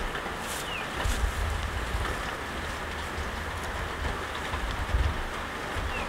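Steady background hiss in an open-sided sheep barn, with an uneven low rumble like wind on the microphone and one faint short chirp a little under a second in.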